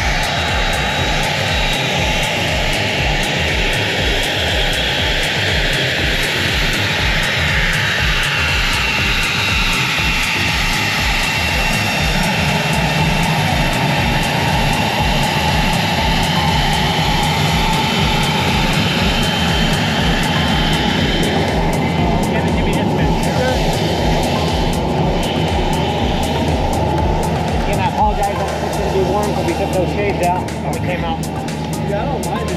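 Cessna Citation XLS business jet taxiing, its twin turbofan engines giving a loud, steady high whine. The whine sweeps in pitch during the first dozen seconds as the jet moves past, and the high part fades after about twenty seconds.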